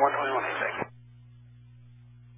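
An air traffic controller's voice over a narrow, band-limited radio feed, cutting off just under a second in. A steady low electrical hum is left in the feed after it.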